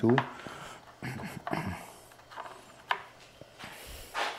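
Quiet handling of a small metal bolt and nut in gloved hands while their threads are checked, with two short clicks about a second and a half apart.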